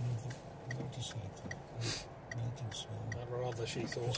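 Inside a car waiting to join a roundabout: a low, steady engine hum with a turn indicator ticking evenly, about two and a half ticks a second. There is a short hiss about two seconds in, and a voice comes in near the end.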